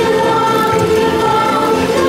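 A choir singing long held notes over music, played as a theme-park dark ride's soundtrack.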